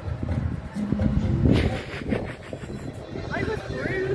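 Faint voices and music over a low, steady rumble.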